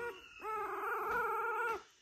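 A week-old goldendoodle puppy crying: a short squeak at the start, then one long, wavering, high cry lasting about a second and a half.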